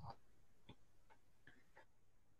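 Near silence, with a handful of faint, short clicks spaced a little under half a second apart.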